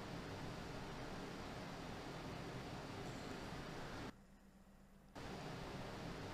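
Faint, steady air-conditioner hum and blowing-air noise: the room's background noise on a voice recording, played back. About four seconds in it cuts out to near silence for about a second, then comes back.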